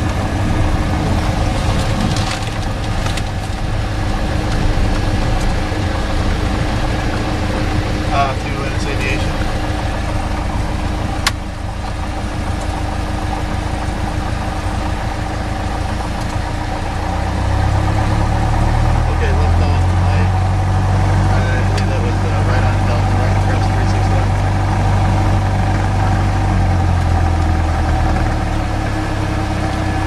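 Cessna 172's piston engine heard inside the cabin, a steady drone on the ground after landing. A sharp click comes about eleven seconds in, and from about seventeen to twenty-seven seconds a deeper low hum grows louder.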